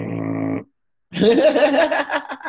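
Laughter: one held laugh that breaks off about half a second in, then after a short pause a second, wavering burst of laughter from about a second in.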